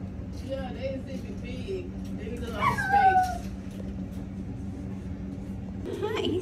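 Voices in the background over a steady low hum. About two and a half seconds in comes the loudest sound, a call that falls steeply in pitch and lasts about a second.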